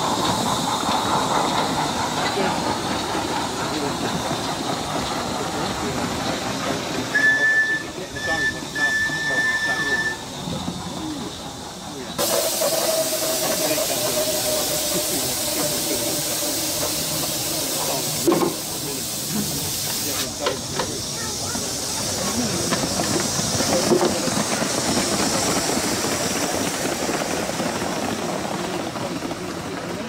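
Live-steam Gauge 3 model steam locomotive hissing steadily. A high whistle sounds in a few short toots about seven to ten seconds in. A louder, sharper rush of steam with a faint falling tone runs from about twelve to twenty seconds, with a few sharp clicks around it.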